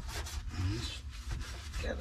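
Gloved hand rubbing a rag over a bare steel car floor pan, a steady scratchy wiping as a rust-removing chemical is wiped onto the surface rust. A short spoken word comes near the end.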